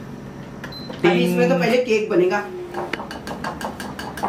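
A countertop electric oven's control panel gives one short electronic beep as its Start button is pressed to begin preheating. A voice follows, then a metal spoon clinks and scrapes against a mixing bowl as cake batter is stirred.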